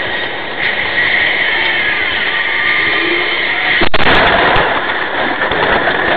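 Steady road and engine noise inside a vehicle's cabin, then about four seconds in one sharp, loud crash as a fishtailing SUV's trailer hits the vehicle head-on and cracks its windscreen. The crash is followed by a louder, rougher rush of noise as the damaged vehicle keeps moving.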